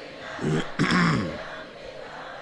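Someone clearing their throat: a short sound about half a second in, then a longer, louder, rasping one just after.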